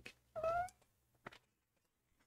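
A cat's single short meow, rising in pitch, starting about a third of a second in. A faint click follows about a second later.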